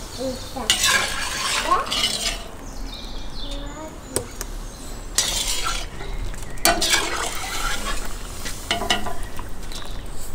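A metal skimmer scraping and clinking against a cast-iron kazan in several irregular bursts, with a few sharp clinks, as pieces of meat are scooped out of the pot.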